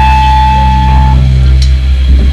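Amplified electric guitar and bass ringing out a loud held chord over a steady low rumble; one higher ringing tone cuts off about halfway through.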